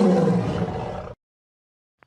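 A roar sound effect under a grinning-face animation, loudest at the start and fading, then cutting off suddenly a little after a second in.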